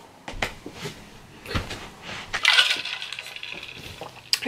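Handling noises as a person moves about and picks things up: a few light knocks, then a longer rustle about two and a half seconds in.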